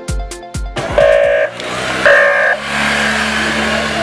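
Afrobeat music with a kick-drum beat cuts off about a second in. Then come two short high blasts over crowd noise, and a motorcycle engine running steadily as it passes.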